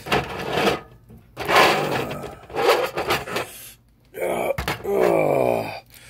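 A person voicing a wrestler's pain in bursts of grunts and groans, ending in a drawn-out groan that slides in pitch. A single sharp knock comes just before that last groan, about four and a half seconds in.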